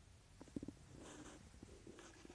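Near silence: a faint low rumble of wind and handling on the microphone as the camera pans, with a few soft clicks about half a second in and a brief faint rustle just after a second in.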